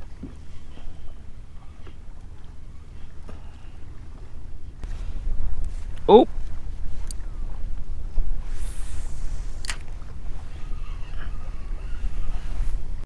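Wind buffeting an action-camera microphone on open water, a steady low rumble, with a brief hiss and a single sharp click in the second half.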